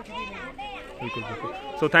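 Background chatter of several people talking at once, children's voices among them.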